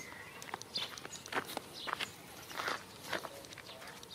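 Footsteps on a dirt road strewn with loose stones, coming at an uneven pace several times a second.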